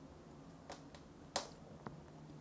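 Quiet room tone broken by three small, sharp clicks, the loudest just past the middle.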